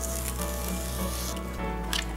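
Kitchen knife slicing through a crisp romaine heart on a plastic cutting mat: a rough, rustling crunch, over background music holding steady low notes.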